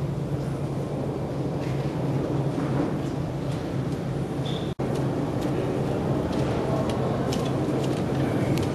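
Steady low hum and rumble of a large hall's room noise through a camcorder microphone, with scattered faint clicks. The sound cuts out for an instant about halfway through.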